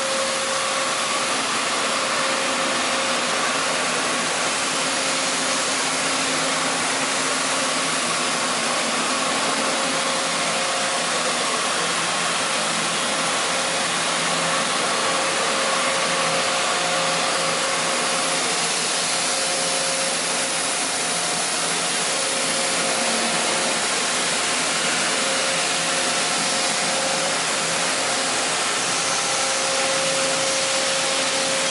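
Steady whirring hiss of a large CNC gantry milling machine and its shop, powered up but not yet cutting, with a few faint steady tones over the noise.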